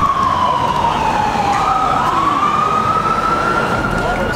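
Emergency vehicle siren wailing: its pitch slides slowly down for about two seconds, then jumps up and climbs slowly back.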